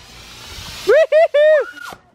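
A handheld smoke-bomb firework hissing as it pours out smoke, the hiss building over the first second. It is then drowned by three short, loud, high-pitched cries and a softer call near the end.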